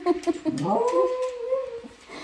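A West Highland white terrier whining: a short note at the start, then one long call that rises in pitch and holds for about a second.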